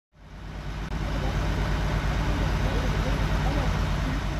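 Fire truck's diesel engine running at a steady idle, a low even throb, fading in over the first second, with faint voices of people in the background.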